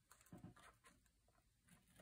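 Near silence, with a few faint snips in the first second from small scissors cutting into folded lined paper along the crease.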